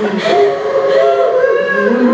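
A woman's voice through a handheld microphone, high-pitched and drawn out in an exaggerated, sing-song way rather than ordinary speech.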